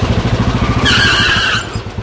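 A motor vehicle engine running with a fast, throbbing beat, and a brief tyre screech of well under a second about a second in.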